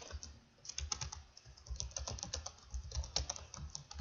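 Typing on a computer keyboard: a quick, uneven run of keystrokes as a short phrase of text is typed out.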